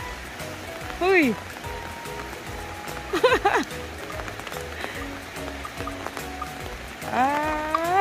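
A man's short playful shouts ("hey!") over quiet background music with long held notes; a burst of high calls about three seconds in and a rising call near the end.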